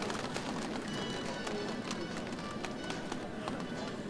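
Stadium crowd ambience: voices and many scattered claps, with music in the background.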